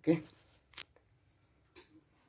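A man says "okay", then a single sharp click just under a second later and faint rustling, with a weaker click near the end.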